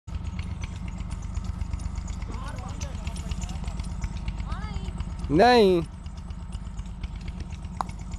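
A boy's loud shout, rising and falling in pitch, about five seconds in, with fainter calls earlier, over a steady low rumble. Just before the end, one short sharp knock of a cricket bat hitting the ball.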